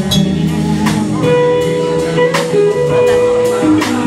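Live blues band playing: an electric guitar holds one long sustained note from about a second in until near the end, over steady drum kit hits and electric bass.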